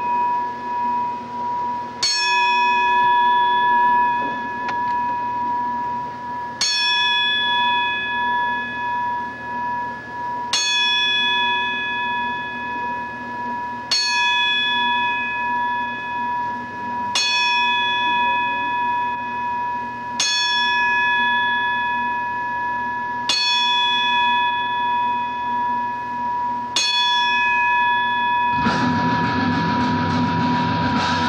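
A bell tolled slowly as a memorial, struck eight times about every three to four seconds, each strike ringing on into the next. Near the end, rock music comes in.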